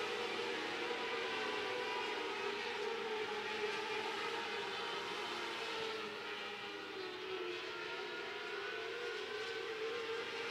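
A pack of 600cc micro sprint cars lapping a dirt oval, their high-revving motorcycle engines blending into one steady, wavering wail. It dips a little in level a few seconds before the end as the cars circle.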